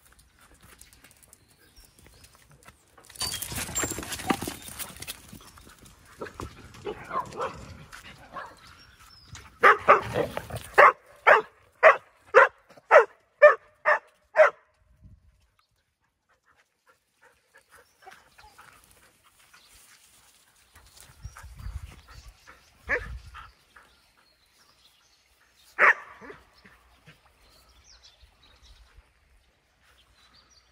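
A dog barking repeatedly, about ten barks at roughly two a second, after a couple of seconds of rustling noise.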